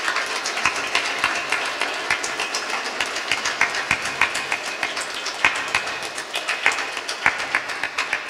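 Audience applauding: a steady, dense patter of hand claps.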